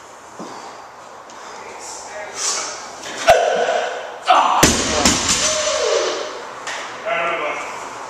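Barbell snatch with bumper plates: a sharp clank a little over three seconds in, then a heavier crash with rattling and ringing about halfway through as the loaded barbell is dropped onto the wooden platform. Shouts and a falling yell come around the impacts.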